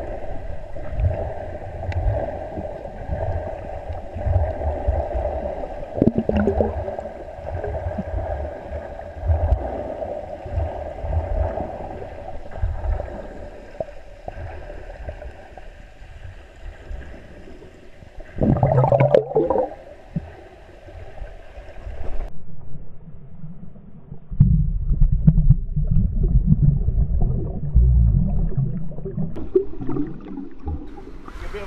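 Muffled underwater sound in a swimming pool, heard through a submerged camera: a steady hum with low bubbling rumble. About two-thirds of the way through comes a brief louder muffled call. Near the end the sound grows duller and a heavy low rumbling of water moving against the camera takes over.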